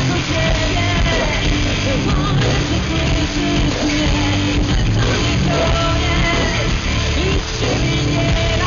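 Live rock band playing at full volume, electric guitar and band, with a woman singing held, wavering notes over it; heard loud and dense from the audience.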